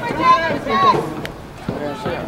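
Several raised voices shouting short calls, loudest in the first second, a brief lull, then more calling near the end.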